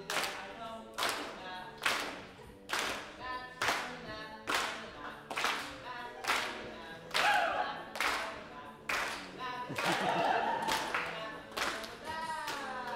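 Hand claps keeping a steady beat, a little faster than one clap a second, under unaccompanied singing voices; the singing grows louder near the end.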